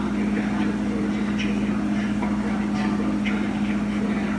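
Speed Queen front-load washer spinning its drum: a steady, even motor and drum hum, with faint intermittent swishes above it.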